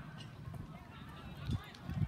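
Running footsteps on a rubber track during a high jump approach, with low thuds about a second and a half in. Faint honking calls sound in the background.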